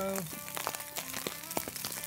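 Dense, irregular crackle and patter: a small wood fire burning in a Fire Box stove, with precipitation pattering on the tarp overhead.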